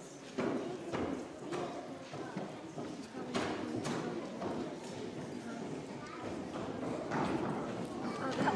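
Background chatter of people talking in a room, with irregular sharp clacks like hard-soled shoes stepping on a hard floor.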